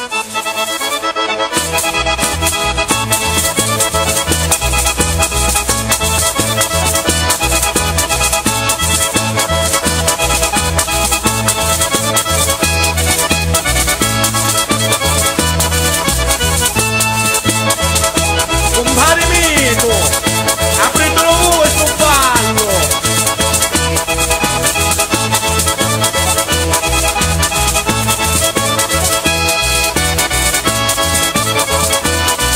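Calabrian tarantella music struck up on accordion over a pulsing bass beat, with a few sliding, swooping notes about twenty seconds in.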